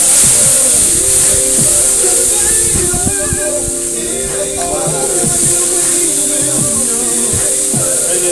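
Water squirted from a bottle onto a hot grill, hissing into steam; the hiss starts suddenly at the outset and slowly eases. Music plays throughout.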